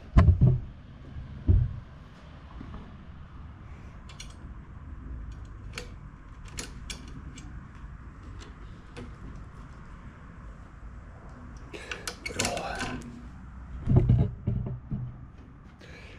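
Mower parts being handled while a self-propel drive cable is routed and clipped in: a few loud thumps near the start and again near the end, with scattered small clicks between.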